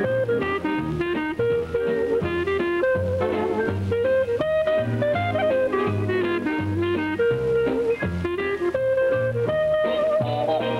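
Clarinet playing a fast jazz melody over a band's rhythm section with a steady bass line.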